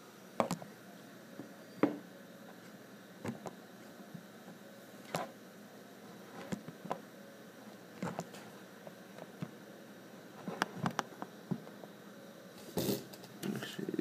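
Handling noise from a phone camera being picked up and repositioned on a desk: scattered sharp clicks and knocks at irregular intervals, with a quick cluster of them about two-thirds of the way through and more near the end.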